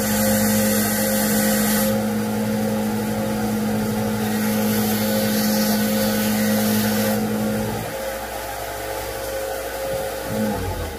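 Bench belt-and-disc sander running with a steady motor hum while a steel AR-15 hammer is ground against it. The hiss of the metal on the abrasive comes and goes: strong for about the first two seconds, and again from about four to seven seconds. Near the end the lower part of the hum drops away.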